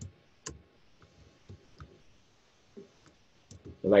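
Computer keyboard and mouse clicks, about half a dozen sharp single clicks spaced irregularly, while text is typed, selected and copied.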